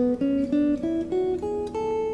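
Telecaster-style electric guitar playing an ascending A major scale, one note at a time, about four notes a second.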